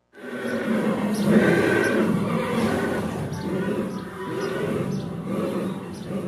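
Horse neighing: a loud, rough call that starts abruptly and carries on for about six seconds.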